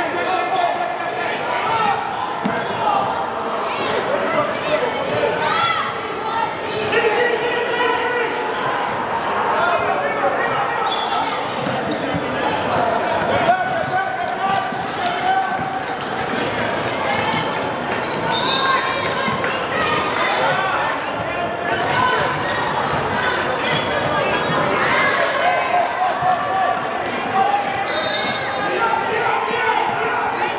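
Basketball dribbled on a hardwood gym floor, with the steady overlapping chatter and calls of players and spectators filling a large hall.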